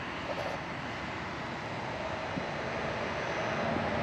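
Steady wash of distant engine noise, growing gradually louder.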